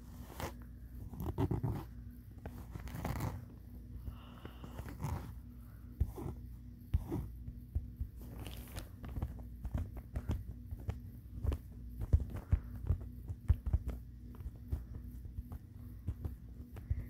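Close-miked mouth sounds: crisp, irregular clicks and crunches like biting or chewing, coming more thickly in the second half.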